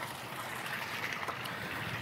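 Water trickling steadily with a few faint small splashes, as from a wet cast net and its catch of shad being handled over the boat's bait well.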